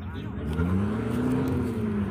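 A 4x4 off-road truck's engine revs up, peaking about a second and a half in, then eases back down.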